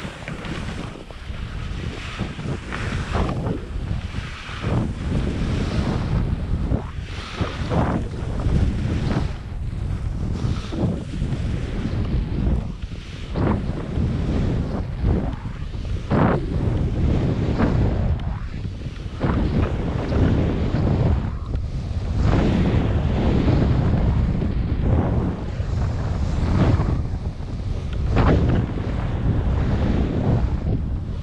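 Wind buffeting a helmet camera's microphone with a heavy low rumble, as skis hiss and scrape over wind-crusted snow in irregular swooshes through the turns.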